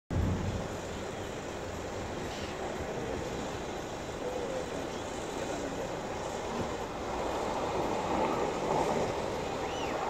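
Diesel truck tractor hauling a bus-bodied passenger semi-trailer drives slowly past, a steady engine-and-road sound that gets a little louder in the second half as a minibus pulls in close.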